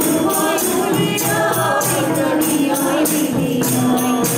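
A group of voices singing a Hindu devotional bhajan, accompanied by a hand-held tambourine (a frame drum with jingles) beaten in a steady rhythm.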